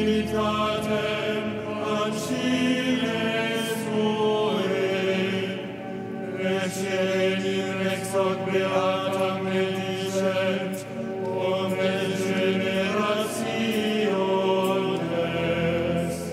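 Choir chanting a liturgical text, long sustained sung lines with brief breaks about six and eleven seconds in.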